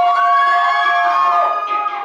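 Several high-pitched voices holding long notes together, rising briefly at the start and then held steady for over a second before trailing off near the end.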